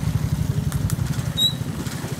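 Twin-shock trials motorcycle engine running at low revs with a rapid, even putter as the bike is ridden slowly through the section. A brief high chirp comes about two-thirds of the way through.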